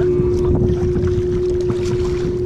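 Wind buffeting an action camera's microphone on a kayak, with splashing from the paddle and water, over a steady hum.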